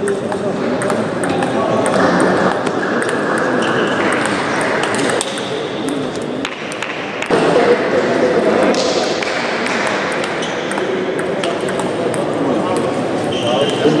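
Table tennis ball clicking off paddles and the table in quick back-and-forth rallies, with more clicks from neighbouring tables, over a steady babble of many voices.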